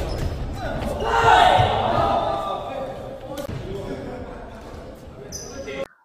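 Game sound of a badminton doubles rally in a large gym: sharp racket hits on the shuttlecock and shoes on the court floor, with players' voices echoing in the hall, loudest about a second in.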